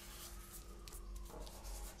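Faint rubbing and rustling of card being folded and slid into place by hand, over a low steady room hum.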